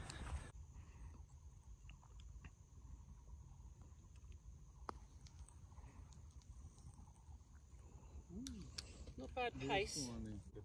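Quiet outdoor background: a low steady rumble with a few faint clicks, and a voice heard briefly near the end.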